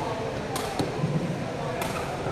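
A sepak takraw ball being kicked: three sharp knocks, two close together about half a second in and one near the end, over low background voices.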